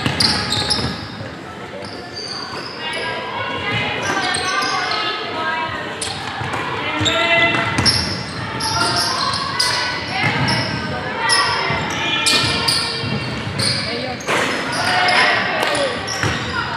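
Basketball play on a hardwood court in a large, echoing hall: the ball is dribbled and bounced in a series of sharp thuds, and sneakers squeak on the floor. Players call out to each other over it.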